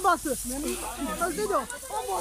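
Several voices talking over one another, with a steady rustling hiss of tall grass brushing against clothes and the camera while walking through it.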